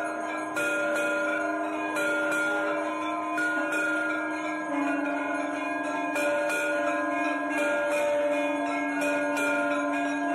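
Temple bells rung continuously during an aarti, struck again and again so that their ringing tones overlap, over a steady low held tone that dips slightly in pitch about halfway through.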